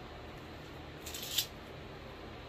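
A brief rasp about a second in as the strap of a Teva sandal is unfastened to pull the sandal off a foot, over a low steady room hum.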